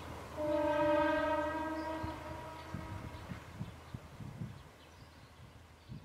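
A diesel railcar's horn sounds one long note of about two and a half seconds, loud at first and then fading, over a low steady engine hum.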